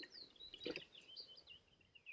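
Faint birdsong: a small bird singing a run of quick chirps and short falling whistled notes. About two-thirds of a second in, one short soft gulp as milk is swallowed from a jug.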